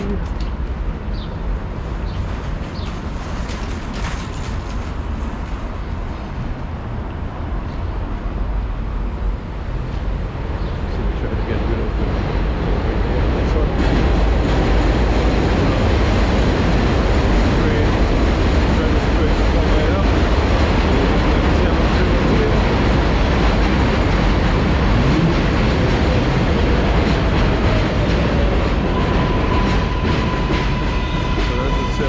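Elevated New York City Subway train running on the Flushing Line tracks over Roosevelt Avenue. Its rumble grows louder about a third of the way in and stays loud and steady.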